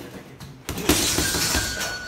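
A quick flurry of punches on a heavy punching bag, several thuds under a loud jangling rattle of the bag's hanging chains, lasting about a second.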